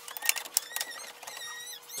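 A few light plastic clicks, then a thin, wavering squeak lasting about a second, as a power cord plug is pushed into the power inlet at the back of an inkjet printer.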